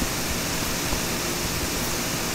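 Steady background hiss with a faint, constant low hum: the recording's noise floor, with no other sound.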